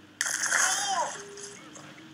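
A long glass plate shattering with a sudden crash about a fifth of a second in, together with a man's shout, fading within about a second.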